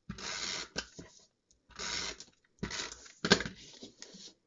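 Tape runner drawn across the back of a cardstock panel in three short strokes, each a brief hiss, with a sharp click a little over three seconds in.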